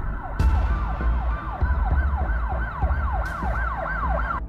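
An emergency-vehicle siren yelping fast, each cycle a quick falling sweep in pitch, about three a second, over a deep low rumble.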